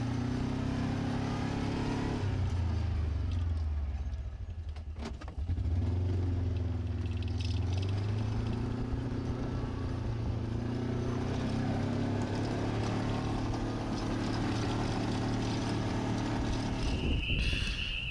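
Gator utility vehicle engine running as it drives along a farm track, easing off briefly about four to five seconds in, then running steadily again.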